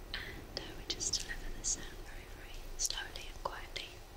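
Close-up whispering with soft brushing: a makeup brush swept over the ear of a 3Dio binaural ASMR microphone, in short hissy strokes.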